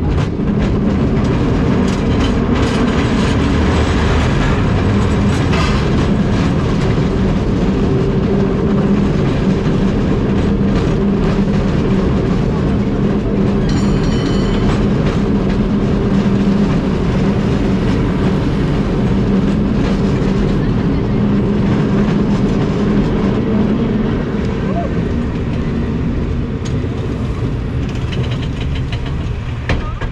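San Francisco cable car running uphill, the steady rumble and hum of the car on its rails and moving cable. A brief high ringing tone comes about halfway through, and the hum eases near the end.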